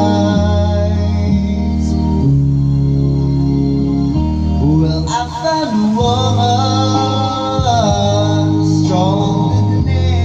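Karaoke backing music with long held chords, joined about halfway through by a man singing into a microphone in long, wavering held notes.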